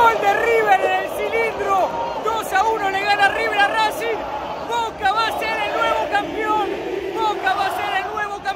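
A man shouting excitedly at close range over a packed stadium crowd cheering and shouting.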